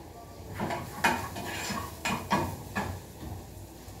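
Metal cooking pots on a gas stove clinking and knocking as they are handled, several separate light knocks.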